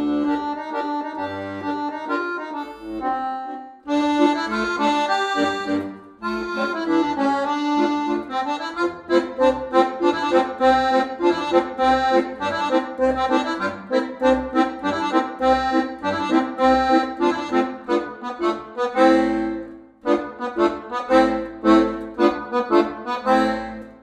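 Solo accordion playing simple French-style tunes: a right-hand melody over left-hand bass notes alternating with chords. The playing stops briefly a few times, about 4, 6 and 20 seconds in, between phrases or pieces.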